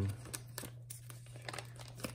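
Plastic binder sleeve pages crinkling as a nine-pocket page is turned and handled, with scattered small ticks.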